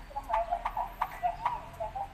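Bouncy background music of an animated cartoon playing through laptop speakers: a quick run of short, clipped, knocking notes at about five or six a second.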